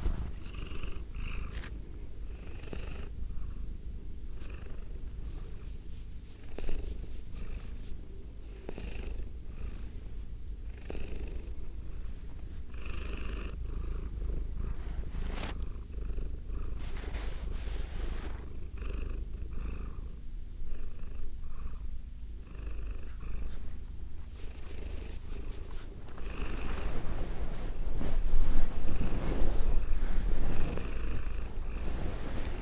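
Domestic cat purring steadily close to a binaural microphone, with short, higher noises every few seconds over the low purr. The purring grows louder near the end.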